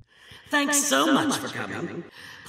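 A person's voice speaking in a lively, sing-song manner, starting about half a second in.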